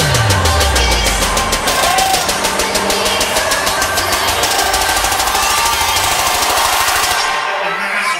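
Electronic dance music: a deep bass sweep falls at the start, then a rapid, even drum roll of repeated hits runs on. Near the end the bass drops out, a build-up just before the track drops into a dubstep section.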